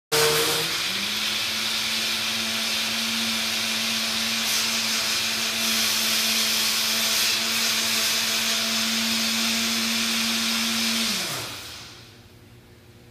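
Electric kitchen blender running: a loud, steady whir over a constant hum that steps up in speed about a second in, then winds down and stops near the end.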